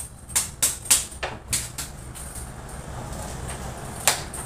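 Wooden board knocking against the workbench as it is handled and shifted: a quick series of sharp knocks in the first two seconds, then only a low steady background hum.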